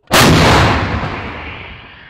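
AHS Krab 155 mm self-propelled howitzer firing a single round: one sudden, very loud blast, with a rumble that dies away over the next second and a half.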